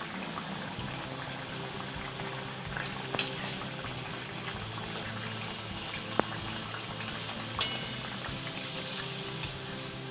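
A gharge (pumpkin puri) deep-frying in hot oil in a steel kadhai, the oil sizzling and bubbling steadily around it. A few sharp metallic clicks from the metal slotted spoon touching the pan.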